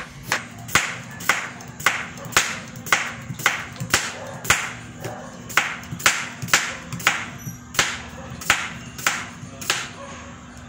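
Kitchen knife slicing a white radish into thin rounds, each stroke ending in a sharp tap on a plastic cutting board, about two a second in a steady rhythm.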